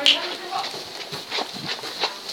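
Irregular clicking and knocking from a pet hamster, at no steady rhythm.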